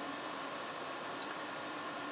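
Steady low hiss of background noise, like a small fan running, with faint steady tones in it and no distinct events.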